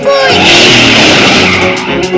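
Cartoon sound effect of a car's tyres screeching as it speeds off: a loud hissing screech of about a second and a half that fades out.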